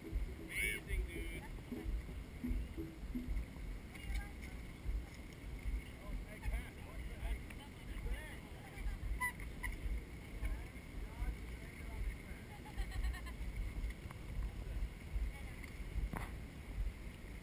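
Wind buffeting the camera's microphone: a gusty low rumble that rises and falls all the way through, with faint distant voices underneath.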